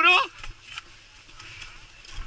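A man's voice ends just after the start, then the faint rolling noise of a mountain bike on a dirt trail, with a low rumble.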